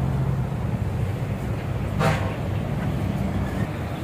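A steady low motor hum, with one brief, sharper sound about two seconds in.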